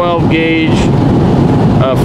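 Steady road and engine noise inside a car's cabin at highway speed. A man's voice speaks briefly at the start and again just before the end.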